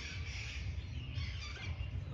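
Faint high bird chirps over a low, steady background rumble.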